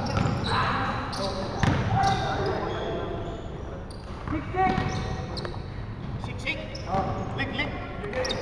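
Indoor pickup basketball game: a basketball bouncing and players' feet on a hardwood court, with players' voices calling out now and then.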